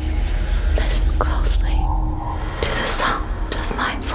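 A deep, steady low drone of cinematic sound design, with breathy whispered voices coming in several short bursts over it.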